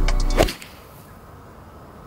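Background music that cuts off about half a second in on one sharp crack: a TaylorMade P790 7-iron striking a golf ball cleanly. After it comes a low, steady open-air background.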